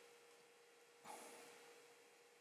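Near silence: room tone with a faint steady hum, and one brief soft breath-like noise about a second in.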